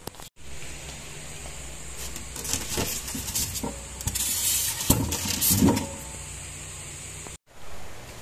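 Steady low hum from an egg incubator, with scraping and knocking handling noises and a short hiss about halfway through.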